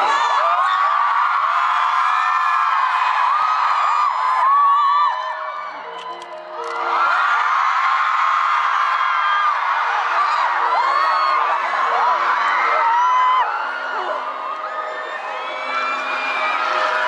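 Concert crowd screaming and cheering, a mass of overlapping high-pitched screams that dip briefly about five seconds in. About six seconds in, a piano begins slow, sustained notes under the screams.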